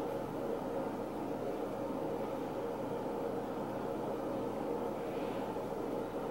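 Steady low background hum and noise with no distinct events.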